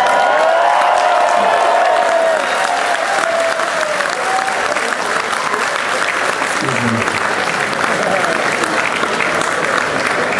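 Concert audience applauding, a dense steady clatter of clapping, with cheers and shouts over it in the first few seconds.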